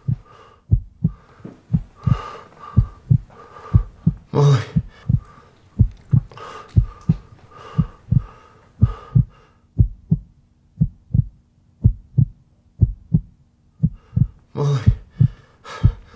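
A heartbeat sound effect, a steady run of low double thumps, under heavy gasping breaths that come about every two seconds. The breathing stops for a few seconds in the second half and returns near the end, while the heartbeat keeps going.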